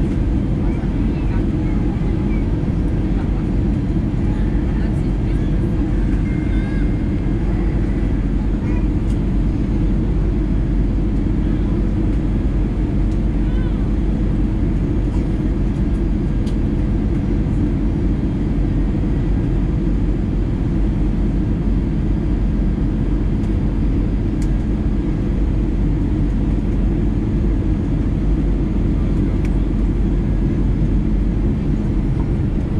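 Steady, loud cabin rumble of an Airbus A320-214 on final approach, heard from a forward window seat beside the CFM56-powered wing: engine and airflow noise holding an even level throughout.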